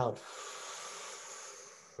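A person's long, steady exhale through the mouth, a breathy hiss lasting nearly two seconds and fading toward the end: breathing out after a big deep breath in a breath-support vocal warm-up.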